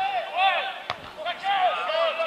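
A football kicked once, a single sharp thud about a second in, amid continual shouting voices on the pitch.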